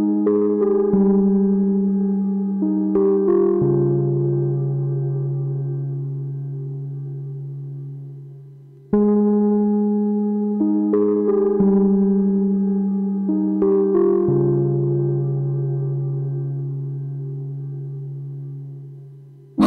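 Slow instrumental music: a short phrase of ringing, bell-like notes, each struck and left to die away slowly. The phrase fades out and starts again about nine seconds in, then fades once more.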